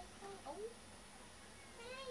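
Domestic tabby cat giving short, quiet meows, with one rising-and-falling meow near the end.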